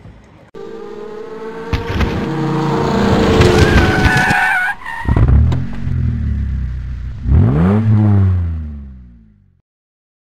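Racing-car sound effects: engines revving with tyres screeching, then one rev that rises and falls near the end before fading out.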